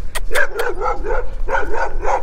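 Dogs barking, a run of short quick barks several times a second, over a low rumble of wind on the microphone.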